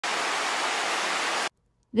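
Rushing creek water tumbling over rocks, a steady even rush that cuts off abruptly about one and a half seconds in.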